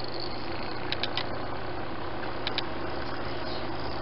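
Steady hum of a DIY magnetic stirrer, an old PC cooling fan in a small box running off a 9-volt adapter, spinning a stir bar in a glass beaker of liquid. Two pairs of faint clicks come about one second and two and a half seconds in.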